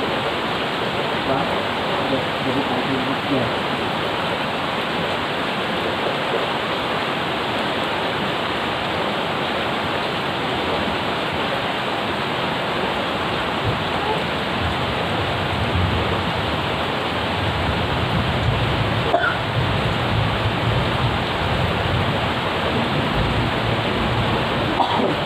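Steady, heavy night rain pouring down on a garden and yard, a dense even hiss. A low rumble joins in about two-thirds of the way through, and there is a brief click near the end.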